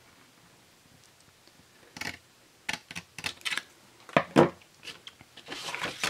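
Scissors snipping through cardstock in a run of short, sharp cuts and clicks after a quiet start, the loudest about four and a half seconds in, with the card being handled on the table near the end.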